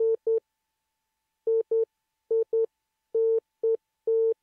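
Morse sidetone of about 500 Hz keyed by a Begali Sculpture Swing sideswiper: short beeps, mostly in pairs, about a second apart, with one longer beep near the end. The key is being test-keyed as its contact gap is closed down.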